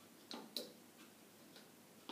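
Chess pieces being set down on a wall-mounted demonstration chessboard: two short clicks about a quarter second apart near the start, then a couple of faint ticks, in near silence.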